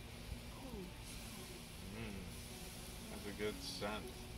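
Quiet background with faint voices, heard now and then over a soft, steady hiss.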